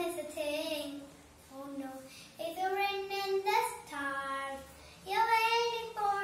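A young girl singing solo without accompaniment, in phrases of long held notes with short pauses between them.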